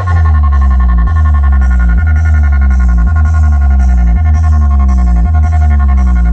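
Bass-heavy electronic dance track, dubstep-like, played very loud through a large DJ speaker stack as a sound check. It kicks in suddenly. Deep sub-bass notes change about once a second under repeated falling bass glides, with steady high tones above.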